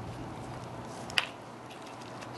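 Quiet steady background hiss with a single short click about a second in.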